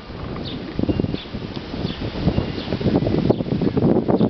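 Hard plastic tricycle wheels rolling over rough asphalt, making a continuous gritty rattle that grows louder about a second in.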